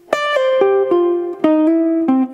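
Archtop jazz guitar playing a short single-note phrase of about six notes. Some notes are slurred with pull-offs and hammer-ons rather than picked, and a hammer-on comes near the end.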